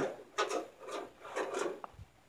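Tin snips cutting thick galvanized steel sheet: three short cutting strokes, followed by a sharp click near the end.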